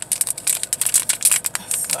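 Clear plastic packaging crinkling in the hands, a quick, irregular run of sharp crackles.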